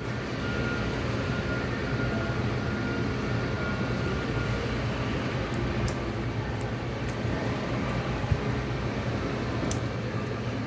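Steady low mechanical hum of a running machine, with a faint high whine over the first few seconds. A few faint light ticks come later, fitting a steel pick working the O-ring and guide band out of a piston bore.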